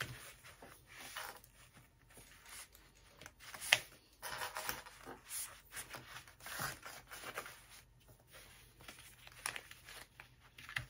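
Quiet rustling and crinkling of waterproof canvas being handled and lined up, with scattered small clicks of plastic sewing clips; one sharper click about four seconds in.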